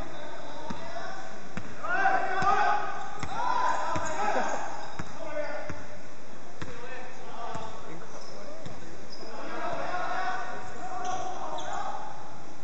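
A basketball being dribbled on a wooden gym floor: a string of short bounces, with players' voices calling out, loudest about two to four seconds in and again near the end.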